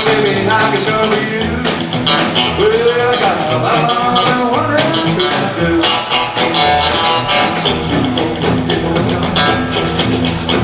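A live rockabilly band plays: an electric guitar with bent notes over drums and electric bass, loud and continuous.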